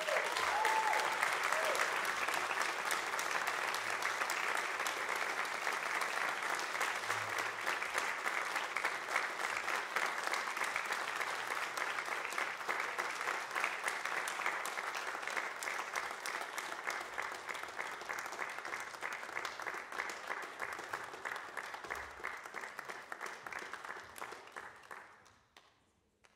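Audience applause breaking out at the end of a performance and continuing steadily, thinning a little toward the end. A couple of short cheers come right at the start.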